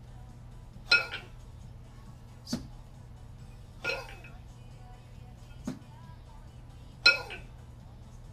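Two 20 kg kettlebells clinking and clanking against each other during double kettlebell jerks, with sharp exhaled breaths. The two loudest, ringing clanks come about a second in and near the end, with lighter knocks between them.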